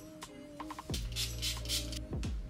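Background electronic music: synth notes over a beat, with a deep falling kick drum about halfway through followed by a held bass note.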